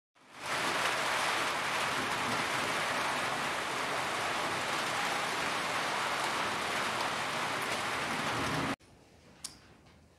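Steady rain falling, an even rush that fades in over the first half-second and cuts off suddenly near the end, leaving faint room tone with one small knock.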